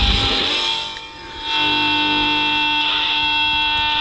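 Rock band's closing bars: the low pulsing bass drone stops at the start and a single high note is held over guitar, dipping briefly about a second in and then ringing steadily.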